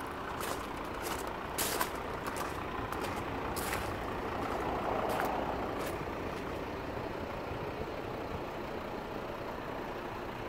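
Footsteps crunching on gravel, a string of short irregular steps in the first six seconds, over a steady background rumble.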